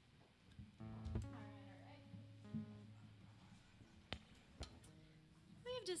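A single amplified guitar note rings out about a second in and sustains for a couple of seconds, with a second, shorter note after it; then two sharp clicks of instrument handling as a guitar is changed over.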